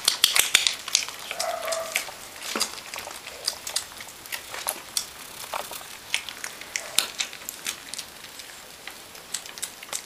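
Puppies suckling at their mother's teats: an irregular run of small wet smacking clicks, several a second, with a brief squeak about a second and a half in.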